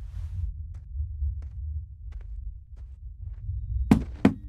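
Low, throbbing rumble of the kind used as horror sound design, with a faint breathy noise at the start and a few small clicks. Near the end comes a sharp, loud hit.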